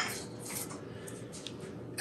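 Faint, soft strokes of a pastry brush spreading a wet melted-butter and mustard mixture over raw crescent roll dough in a glass baking dish, over quiet room tone.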